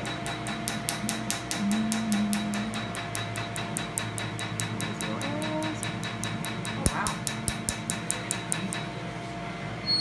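Tattoo-removal laser firing, a rapid, even train of sharp snapping clicks, one per pulse, that stops shortly before the end.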